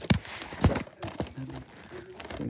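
Handling noise: several sharp knocks and a short rustle as the phone and the shrink-wrapped DVD case are handled, the loudest knock about two-thirds of a second in.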